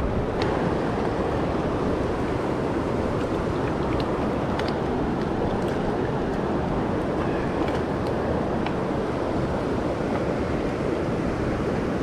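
Rushing river water, a steady, even noise from a fast stream running high with runoff, with a few faint ticks over it.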